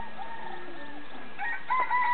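Roosters crowing, faint. A short crow comes near the start, then a longer held crow begins about three-quarters of the way through and carries on to the end.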